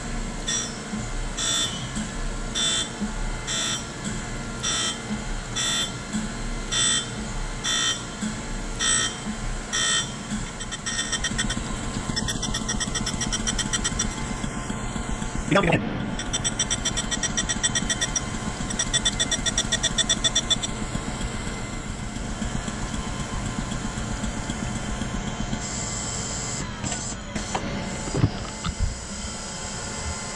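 Surface grinder grinding a steel part under flood coolant, the wheel running with a steady whine as the table power-feeds back and forth. For the first ten seconds or so the sound pulses about twice a second, then evens out, with a sharp click about halfway through.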